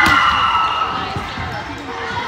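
Open hand smacking a volleyball on the serve: one sharp slap at the start, then a fainter thud of the ball about a second later. Voices call out over both hits.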